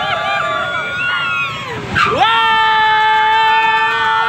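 Riders on a swinging fairground ride screaming, several high cries overlapping and gliding up and down. About halfway through, one long steady scream is held.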